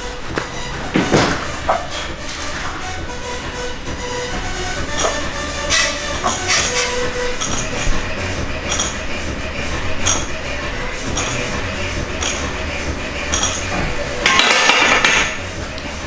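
Barbell with iron plates clinking and clanking during warm-up bench press reps, with scattered sharp clinks, a louder clatter near the end as the bar is racked, and background music underneath.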